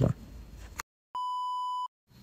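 A single steady electronic beep of the censor-bleep kind, lasting under a second, set between stretches of dead digital silence where the audio cuts out.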